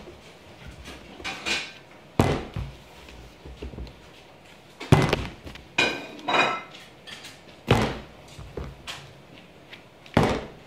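A 2-litre plastic bottle with a little liquid in it being flipped and landing on a wooden table again and again: about six hollow thuds, some followed by a short plasticky clatter as it wobbles or tips.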